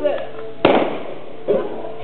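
A single gunshot from a revolver aimed at a can target, one sharp crack about two-thirds of a second in with a short ringing tail.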